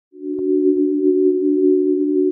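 Steady electronic tone of two close low pitches held together, fading in at the start, with a few faint clicks: a synthesized intro sound under a company logo.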